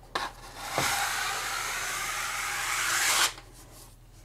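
Level 5 skimming blade, a flexible steel blade on a rigid back, drawn down in one long pull through wet lightweight joint compound over a drywall butt joint: a steady scraping hiss of about two and a half seconds that gets a little louder near the end, then cuts off suddenly. A short knock comes just before the pull.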